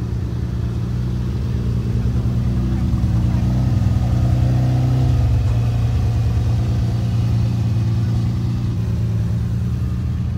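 Bugatti EB110 SS's quad-turbo V12 running at low revs. The engine grows louder toward the middle and then eases off again.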